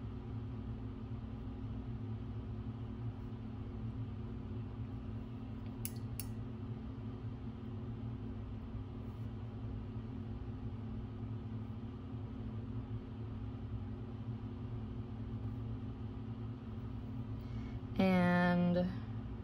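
Steady low room hum with a few constant tones in it, and two quick ticks about six seconds in.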